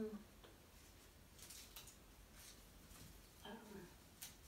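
Near silence in a small room, broken by a brief voice right at the start and another short, fainter voiced sound near the end, with a few faint rustles in between.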